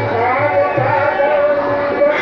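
Qawwali music: a voice singing a wavering melodic line over a steady held drone and repeated low drum beats.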